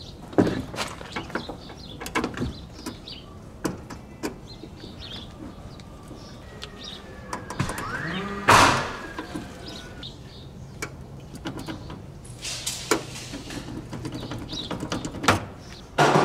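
Scattered clicks and knocks of a hand tool and stiff service cable being worked at the lugs of a metal electrical panel, with one louder noisy rush about halfway through.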